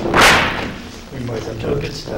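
A sheet of paper swishing close to a desk microphone: one short, loud rush of noise just after the start. Faint speech follows.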